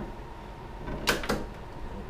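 Two sharp plastic clicks about a second in, a fraction of a second apart: the iMac G3's translucent rear housing snapping into place on its tabs.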